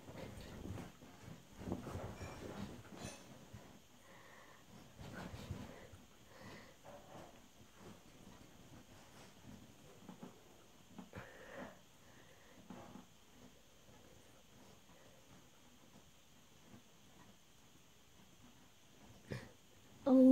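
Faint breathing and soft body movements of a person doing push-ups close to the microphone, with scattered small rustles that thin out in the second half.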